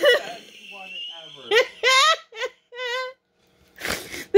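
A woman laughing uncontrollably: a string of short, high-pitched, breathless laughs and squeals with wavering pitch, broken by brief silent gaps.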